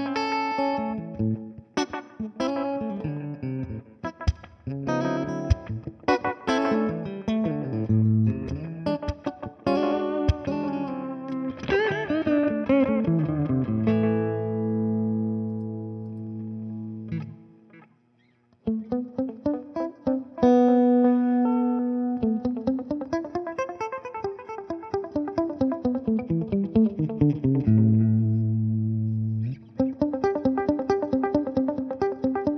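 Electric guitar played through a Brunetti Magnetic Memory tube-voiced delay pedal: quick picked lines, then a held chord that cuts off abruptly about 17 seconds in, a second of near silence, and the playing starts again.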